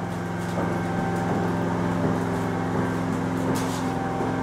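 Generator engine running with a steady, unchanging drone.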